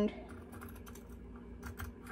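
Fabric scissors snipping through quilting cotton: a few quiet, irregular blade clicks, with a couple of clearer snips near the end.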